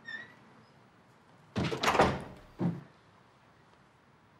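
An interior room door being closed: a faint short squeak at the start, then a loud rush of noise about one and a half seconds in, followed by a short dull thud.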